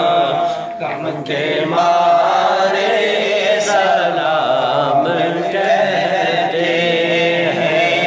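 Men chanting a naat, a devotional praise of the Prophet, in a continuous wavering melody with no break.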